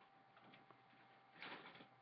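Near silence: room tone, with a brief faint rustle about one and a half seconds in.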